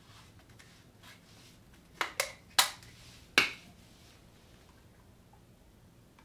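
Four sharp clicks and knocks in quick succession from a plastic oil bottle and a cut-down plastic bottle funnel being handled at the motorcycle's primary fill hole, the later two ringing briefly.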